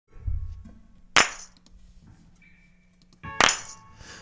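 A low thump, then two sharp clicks about two seconds apart, the second just after a short pitched burst.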